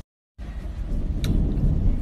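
A sudden drop to dead silence, then a steady low rumble with a couple of faint clicks.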